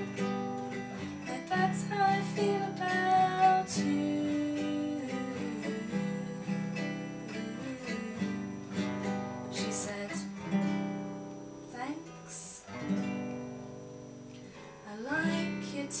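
Nylon-string classical guitar played solo, plucked notes and strummed chords forming an instrumental passage between sung verses.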